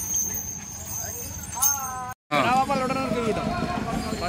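Men's voices calling out over outdoor street noise, with a thin high steady tone in the first half. The sound cuts out completely for an instant about two seconds in, and the calls that follow are louder.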